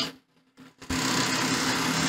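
Industrial bartack sewing machine's drive motor switched on a little under a second in, then running with a steady hum. The machine is idling with its clutch disengaged: it is not yet sewing.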